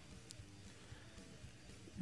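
Near silence: studio room tone with faint background music.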